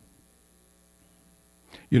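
Faint, steady electrical hum of mains hum type, with no other sound, before a man's voice starts near the end.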